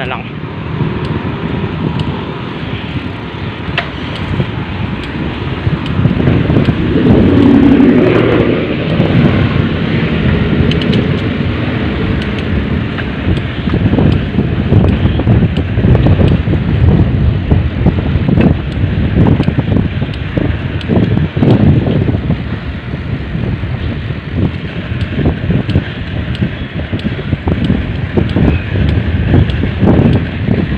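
Wind rushing over the microphone of a camera mounted on a moving bicycle: a loud, gusting rumble that rises and falls as the bike rides along.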